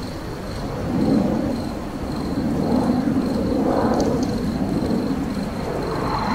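Deep rumbling roar of a jet airliner, swelling about a second in and then holding steady.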